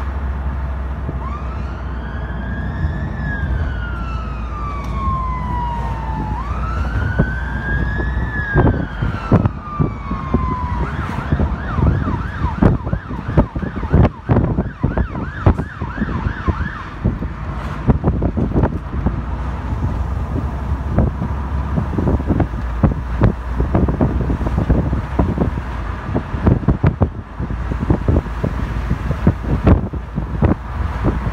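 Fire engine's electronic siren heard from a following car: two slow rising-and-falling wails, then about ten seconds in it switches to a fast yelp for several seconds. A steady low road rumble runs underneath, and many sharp knocks come through the second half.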